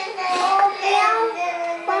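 A toddler's high voice in a sing-song, with a long held note in the second half.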